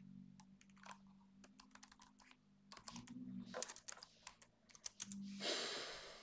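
Typing on a computer keyboard: a run of irregular key clicks, with a louder burst of noise about a second long near the end.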